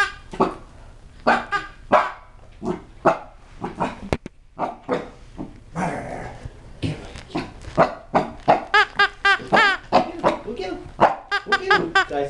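Chihuahua–Cocker Spaniel mix puppy barking again and again in short, high-pitched barks, with a quick run of them near the end; typical of a puppy barking at a new toy that scares him.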